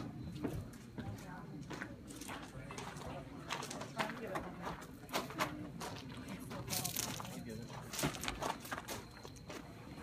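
Indistinct, low voices in the background with scattered sharp clicks and knocks at irregular intervals, like handling and moving about.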